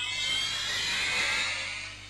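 Television promo stinger: a high, hissing, shimmering whoosh that starts suddenly and fades out over about two seconds.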